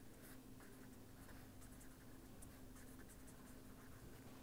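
Faint scratching of a pen writing on paper, in a run of short strokes, over a steady low hum.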